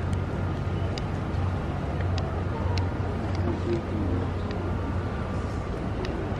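Steady low hum of city street noise with faint, muffled voices and a few short, sharp clicks scattered through.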